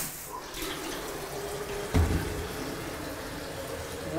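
Water running from a kitchen tap into a plastic electric kettle as it fills, with a single thump about halfway through.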